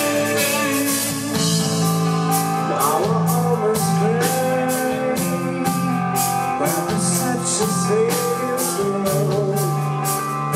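Live alternative rock band playing: distorted electric guitars, bass guitar and a drum kit with a steady cymbal beat about twice a second. About three seconds in, a lead line enters that bends and wavers in pitch.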